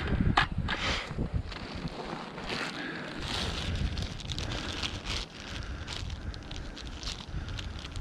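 Plastic bag crinkling and rustling as it is handled and opened, with wind rumbling on the microphone.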